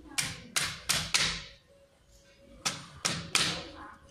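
A series of sharp knocks: four in quick succession, then a pause, then three more, each with a short ringing tail.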